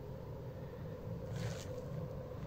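Quiet night ambience: a low, steady rumble with a faint hum, and a brief soft rustle about one and a half seconds in.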